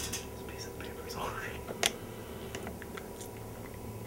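Soft whispering with light handling clicks, one sharper click a little before two seconds in.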